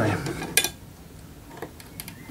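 A few light clicks of plastic and metal as spade-terminal test wires are fitted into the coloured push terminals of a mains power tester. The sharpest click comes about half a second in, with fainter ones later.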